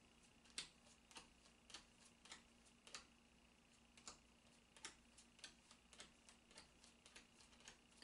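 Faint, sharp clicks of Gypsy Witch oracle cards being counted off one by one from the deck in hand, about two a second and unevenly spaced, against near silence.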